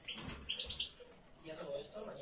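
European goldfinch chirping: a quick run of about four short, high notes just under a second in, given while the bird is being held for treatment of its feet.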